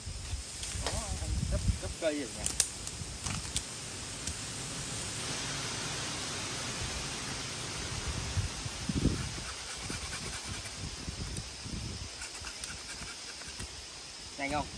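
A thin bamboo cane being cut and trimmed by hand. Sharp clicks and cracks come in the first few seconds, then the cane and dry leaves rustle, with a steady hiss in the middle.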